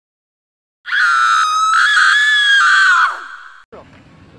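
A long, high-pitched scream starting about a second in, held for about two seconds with a slight waver, then trailing off.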